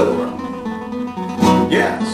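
Nylon-string classical guitar being played: a chord struck at the start and another about a second and a half in, with the notes ringing on between.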